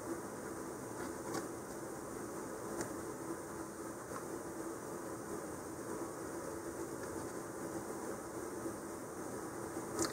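Steady low background hiss of a small room, with a couple of faint light ticks from handling the model.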